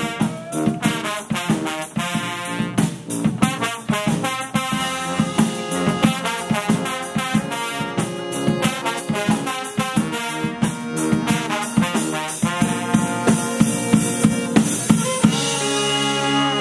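Live brass band playing: trumpets, trombones, saxophones and a sousaphone over a drum kit keeping a steady beat.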